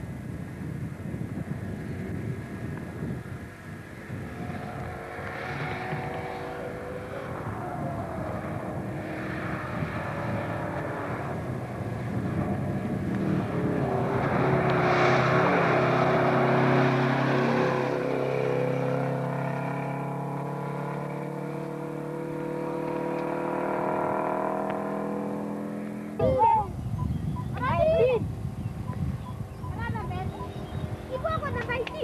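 Subaru RX Turbo rally car's turbocharged flat-four engine at speed on a gravel stage: it approaches, is loudest as it passes close about halfway through, then runs on with its engine note rising and falling before fading. Near the end, after a cut, two short shouts are heard.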